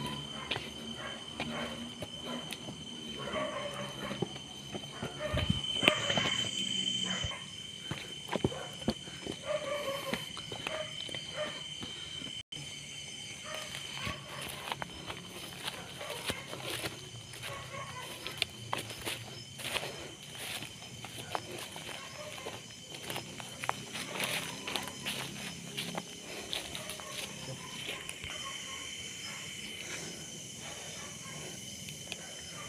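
Footsteps crunching and rustling through grass and undergrowth, with many irregular steps and brushes against vegetation. A steady, high-pitched insect trill runs underneath without a break.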